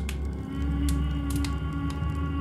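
A low, steady droning hum with several sustained ringing tones above it, part of a drone piece built from drum, bowl and hum. A few faint high ticks sound over it.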